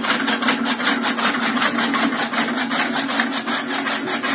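Chaff cutter driven by a 1 HP electric motor, its flywheel blades chopping fodder stalks in a rapid, even rhythm of about six cuts a second over a steady machine hum.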